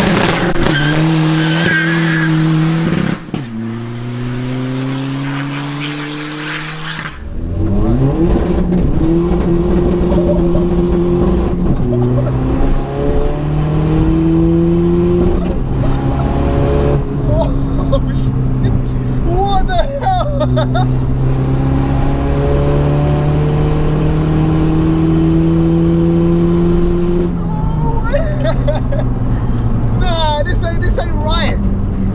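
Tuned 360 bhp VW Golf 1.9 TDI four-cylinder turbo-diesel accelerating hard, its pitch climbing in steps through the gears, first heard from behind the car and then from inside the cabin. It then runs at a steady cruise and eases off near the end, with laughter partway through.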